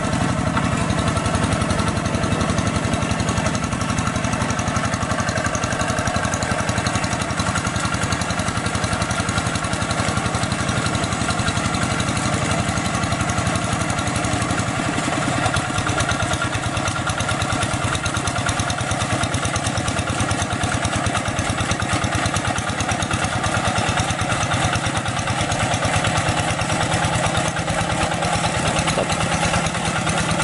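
Two-wheel hand tractor's diesel engine running steadily while tilling a flooded rice paddy. Its note changes about halfway through as the tractor turns at the edge of the field.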